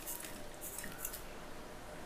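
Soft rustling patter of grated jaggery crumbs falling into a steel mixer jar onto rice powder, faint and dying away after about a second.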